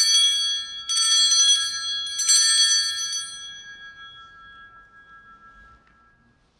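Altar bell rung three times about a second apart, high clear ringing that fades away over a few seconds. This is the bell rung at the elevation of the chalice at the consecration.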